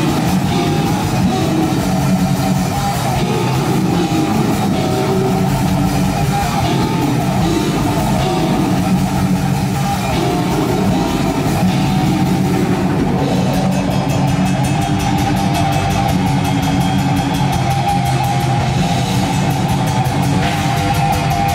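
Heavy metal music with distorted guitars and a drum kit, loud and dense throughout, changing in texture about thirteen seconds in.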